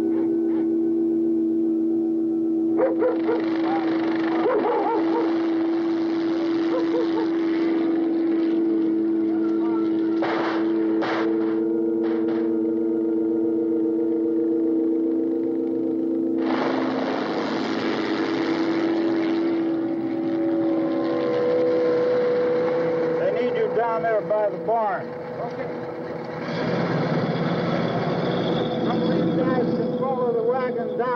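Sustained, droning horror-film score with dogs barking and yelping and men's voices calling in bursts over it, the first burst about three seconds in and another past halfway.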